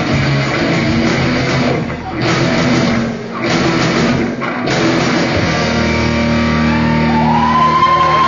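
Live rock band with electric guitars and drums playing, broken by a few short stops, then a long held chord from about five and a half seconds in.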